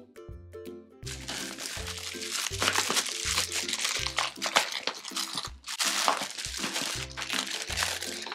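Thin clear plastic packaging crinkling and rustling as it is handled, starting about a second in, over background music with a steady repeating bass line.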